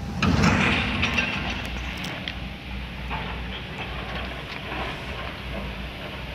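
Railway noise at a station: a steady low rumble from trains, with a loud burst of noise about a quarter of a second in and a few sharp metallic clicks over the next couple of seconds.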